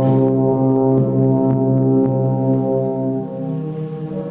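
Wind band playing, with the brass holding loud sustained chords that shift to a new harmony near the end.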